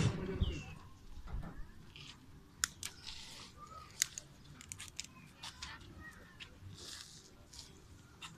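Faint short bird chirps now and then, with scattered small clicks and a few soft rustles from a large catfish being handled in a mesh landing net.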